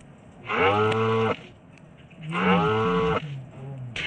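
Cattle mooing: two long moos, each about a second long, with a short pause between them.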